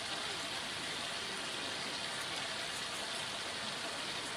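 A steady, even hiss of background noise, like rain or running water, without pitched calls or clattering.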